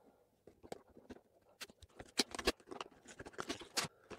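Cardboard retail box being opened by hand: a run of small scratches, taps and rustles as the flap is picked at and pulled open, with a few sharper clicks around the middle and near the end.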